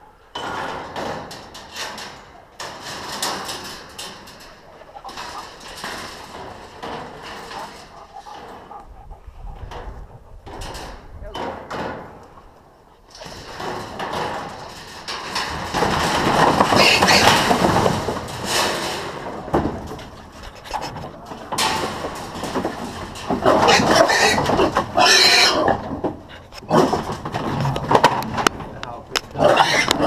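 Feral hog squealing, along with the metal cage trap and livestock trailer rattling and clanking as the hog is moved from the trap into the trailer. The noise grows much louder about halfway through.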